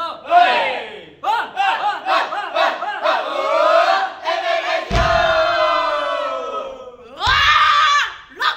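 A group of dancers in a huddle chanting and shouting together as a team rallying cheer. Several short calls lead into one long held shout. A thump comes about five seconds in, and a last loud shout near the end.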